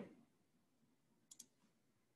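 Near silence: room tone, broken by two faint quick clicks close together a little past the middle.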